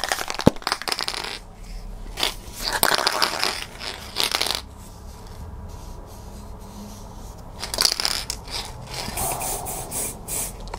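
Aerosol can of Vallejo Surface Primer being shaken, its mixing ball rattling and clicking inside in several short bouts, with a quieter stretch in the middle.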